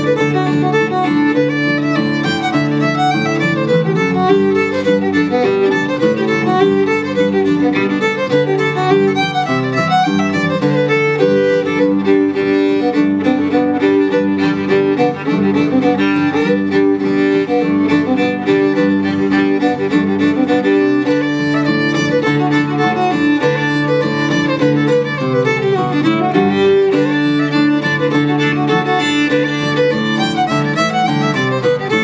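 Old-time fiddle tune played on fiddle with acoustic guitar backing, the fiddle bowing a steady run of notes over held double-stop tones.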